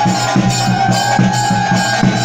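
Loud processional music: drums beating a quick, steady rhythm under one long, held high note.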